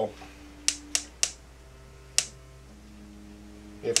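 Four sharp, irregularly spaced clicks of an igniter as a gas stove burner fails to light, over a faint steady hum.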